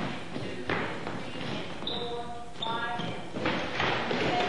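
Indistinct voices talking over footsteps and a few sharp thuds on a wooden floor as people dance.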